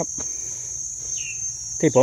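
Crickets trilling in one steady, high-pitched, unbroken drone, with a brief faint chirp just past the middle.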